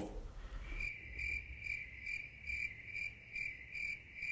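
Cricket chirping: a steady high trill that pulses about two to three times a second, starting about a second in. It is the stock 'crickets' sound effect for an awkward silence.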